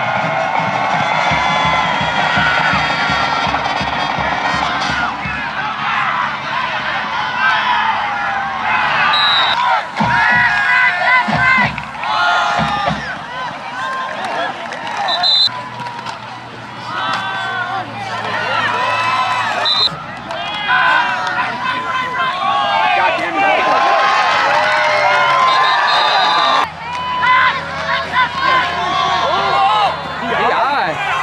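Football crowd in the stands shouting and cheering, a mass of voices with music playing underneath.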